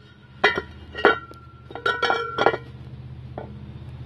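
Hammer striking a punch against the stuck old key in the hub of a steel leaf-blower impeller, to drive the key out. About six sharp metallic strikes, each ringing briefly, the last four in quick succession.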